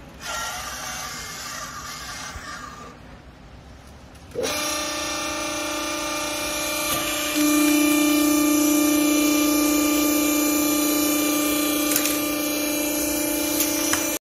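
A vertical hydraulic clothing baler's hydraulic power unit starting abruptly and running with a steady pitched hum, which steps up louder about three seconds later as the press works the strapped bale. Before it starts there are a few seconds of rustling.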